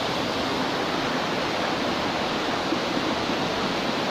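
Rocky mountain stream rushing over boulders: a steady, even rush of flowing water.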